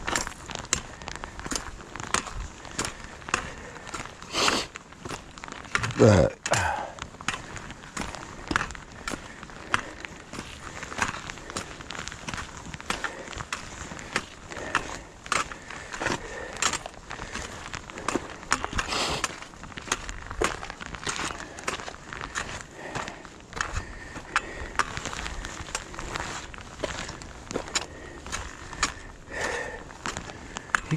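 Hiker's footsteps on a rocky dirt trail with trekking pole tips clicking on stone, a sharp tap about every half second to second. About six seconds in there is a short falling vocal sound like a sigh, from a hiker breathing hard at altitude.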